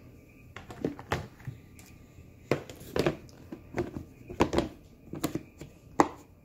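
Clear plastic storage tub handled and its lid fitted and latched shut: a run of irregular sharp plastic clicks and knocks.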